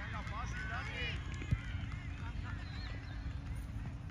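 Players and spectators shouting on a soccer field, with a single thud of a ball being kicked about one and a half seconds in.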